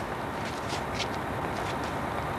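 Steady low rumble of an idling bus engine, with a few faint clicks.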